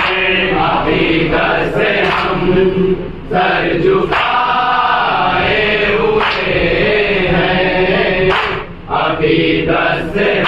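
A group of men chanting an Urdu devotional salam together without instruments, one voice leading at a microphone and the others joining in. The chant breaks briefly about three seconds in and again near nine seconds, between lines.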